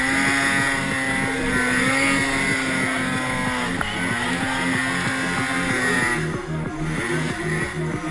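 Polaris Pro RMK snowmobile's two-stroke engine running steadily at high revs through deep snow; about six seconds in the pitch drops as the throttle eases.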